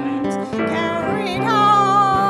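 Gospel song: a woman singing over an instrumental accompaniment, taking up a long held note about one and a half seconds in.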